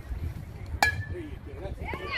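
A metal baseball bat hitting a pitched ball about a second in: one sharp ping with a brief metallic ring after it. Spectators' voices start to rise near the end.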